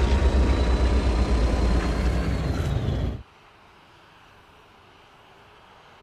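Loud, deep, steady roar of film sound effects, like big aircraft engines, with a faint slowly falling whine on top; it cuts off abruptly about three seconds in, leaving only a faint hiss.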